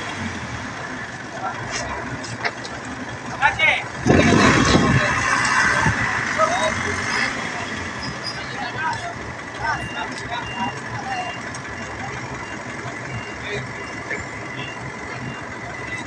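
Truck engine running, with a louder surge about four seconds in, under scattered voices; in the second half a faint interrupted beeping, like a reversing alarm.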